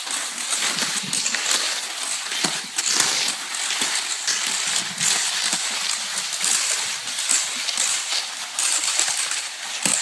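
Cross-country skis sliding over crusty snow in a steady stride, a continuous gritty swishing with small crackles.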